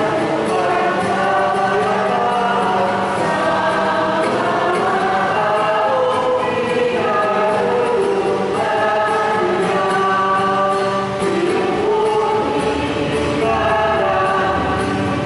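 Choir singing a slow sung part of the Mass in long held notes, over a steady low accompanying tone.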